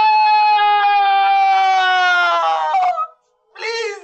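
A woman's long, high-pitched wailing scream of distress, held for about three seconds with its pitch slowly falling, then breaking off. A second, shorter cry starts near the end.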